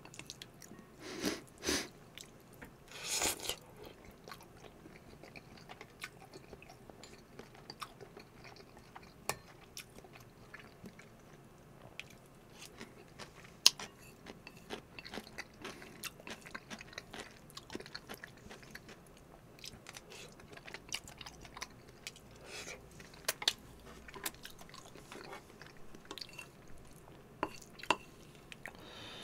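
Close-miked wet chewing of soft creamy pasta noodles, with many small mouth clicks and light taps of chopsticks against a ceramic bowl. There are a few louder short rushes of noise in the first few seconds and a single sharp click about halfway through.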